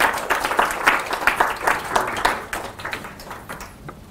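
Audience applauding: a dense patter of many hand claps that thins out and fades over the last second and a half.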